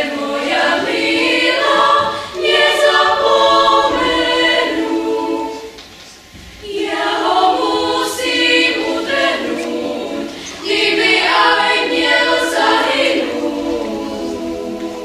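Children's choir singing, with a short break between phrases about six seconds in before the singing resumes.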